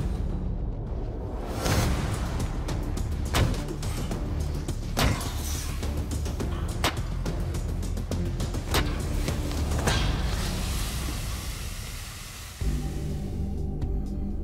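Dramatic background music with six sharp whooshing strikes, roughly one every second and a half to two seconds, as a Vajra-mushti, an edged steel knuckle duster, slashes and stabs into hanging spice bags. Near the end the music cuts abruptly to a new low passage.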